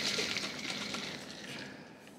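Ice and water rattling and sloshing inside a Yeti 26 oz insulated steel bottle as it is shaken with the lid sealed, dying away toward the end.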